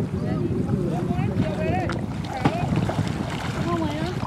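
Wind buffeting the microphone in a steady low rumble over shallow sea water, with faint distant voices calling. A couple of short splashes come about halfway through, as a child slides off an inflatable paddleboard into the water.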